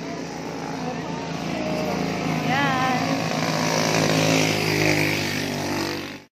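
A motorcycle engine running as it comes up close behind, growing louder over the last few seconds, with a person's voice briefly heard partway through.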